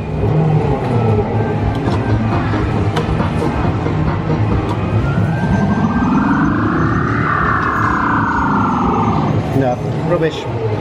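Busy street background of voices and traffic. About halfway through, one tone rises for about two seconds, then falls for about two seconds, like a single siren wail.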